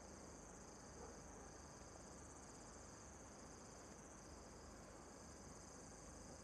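Faint crickets chirping: a steady high-pitched trill, with a second, lower chirp that pulses on and off about once a second.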